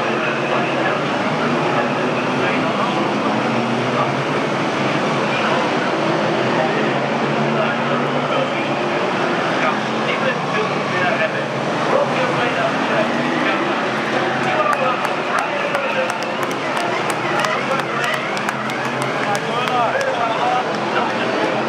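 Stock car V8 engines running around an oval track, mixed with a constant babble of voices from the grandstand. A run of faint ticks comes in over the last few seconds.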